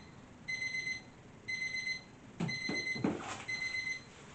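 Electronic timer alarm beeping, a high beep repeating about once a second. Two short noises break in about two and a half and three seconds in.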